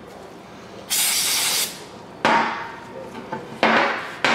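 A short hiss of aerosol carburetor cleaner sprayed onto a shop towel about a second in, then two scrubbing strokes of the towel over the sealing surface of a metal timing cover.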